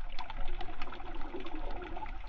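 Underwater sound on a coral reef: a steady low rush of water with many short, scattered clicks and crackles.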